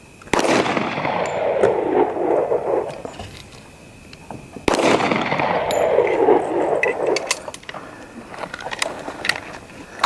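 Two pistol shots, most likely from a 9mm handgun, about four seconds apart, each followed by a long echo that dies away over two seconds or more. Near the end, light crunching steps on dirt and gravel.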